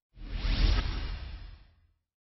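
Whoosh sound effect with a deep low rumble, swelling in quickly just after the start and fading away over about a second and a half.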